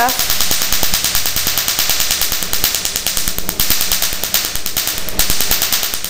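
Cosmetic laser firing rapid pulses onto a black carbon face mask during a carbon laser peel, giving a fast, even run of sharp snaps. The snapping comes from the laser striking the dark carbon; on bare skin it makes no such noise.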